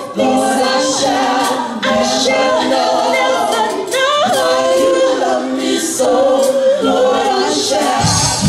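A gospel praise team of several women singing together in harmony through microphones, with no instruments heard under the voices.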